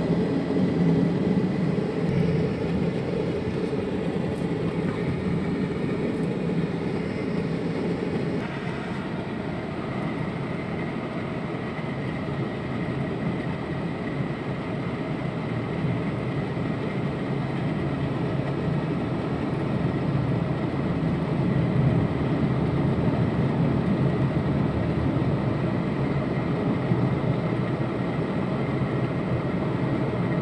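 Steady noise of a car on the move, heard from inside the cabin: engine and tyre noise on the road, with a slight change in tone about nine seconds in.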